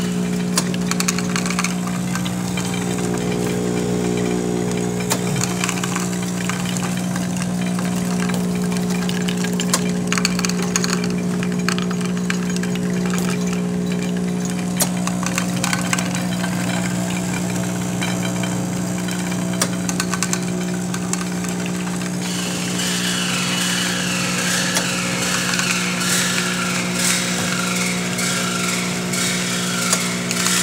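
NEC EM rotary-disc capsule counting machine running: a steady motor hum with a low tone and its overtones, broken by scattered sharp clicks of softgel capsules dropping through the chutes into amber bottles. A little past two-thirds of the way through, a busier high rattling joins the hum.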